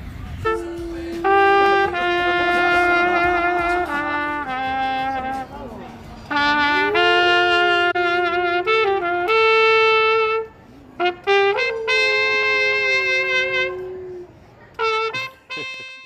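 A trumpet plays slow, long held notes in phrases with short breaks. A dog howls along with it, its voice sliding up and down in pitch against the horn.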